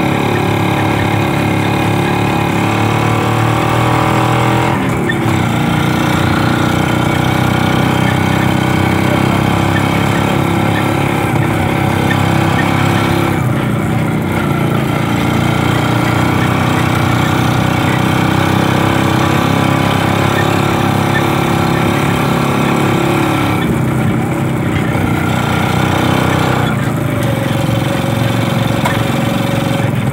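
A 2007 Kawasaki HD3 motorcycle pulling a tricycle sidecar, its engine running steadily under way, heard from inside the sidecar. The engine note dips briefly about four times.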